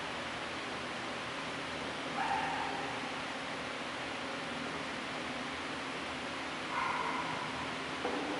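Steady hiss of church room noise. Two brief, high whining tones sound over it, a short one about two seconds in and a longer one near the end.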